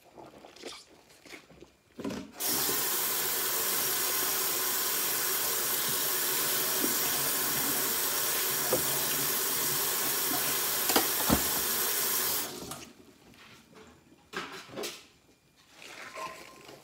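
Kitchen faucet running into a stainless-steel sink full of soapy water for about ten seconds. It comes on about two seconds in and shuts off a few seconds before the end, with a couple of light knocks of dishes while it runs. Before and after, gloved hands scrub and rub dishes softly in the suds.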